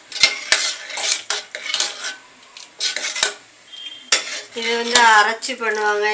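A steel ladle stirs thick porridge in a stainless steel pressure cooker, clinking and scraping against the pot's metal sides in quick, uneven strokes. The stirring pauses about two seconds in and resumes near the end, when a pitched, voice-like sound joins it.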